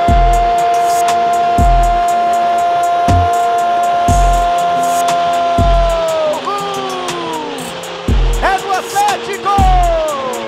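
A football commentator's drawn-out "Gooool" cry, held at one pitch for about six seconds and then falling away, followed by shorter falling shouts, over background music with a thumping beat.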